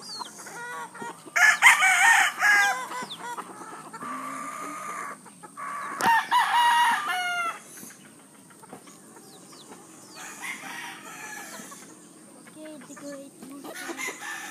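Chickens calling at a coop: two loud, drawn-out calls about one and a half and six seconds in, with quieter clucking between.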